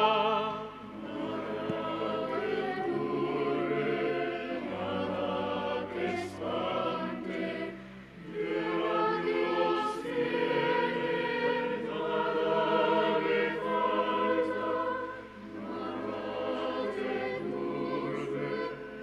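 Choir singing a hymn in held, sustained phrases, with short breaks between phrases about eight and fifteen seconds in.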